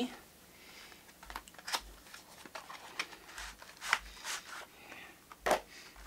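Cardboard retail box being opened by hand: faint scattered scrapes, rustles and light clicks as the card slides and the inner package is pulled out, with one sharper click about five and a half seconds in.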